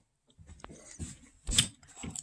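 Quiet tableside eating sounds: faint chewing and handling with a few small clicks, and one sharper knock about one and a half seconds in as the metal spoon moves to a plastic cup of fruit.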